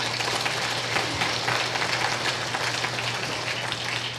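Audience applauding: a steady crackle of many hands clapping that holds for about four seconds.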